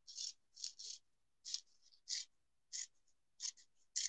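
Scissors snipping through a sheet of paper: a series of short, crisp snips, about two a second, fairly faint.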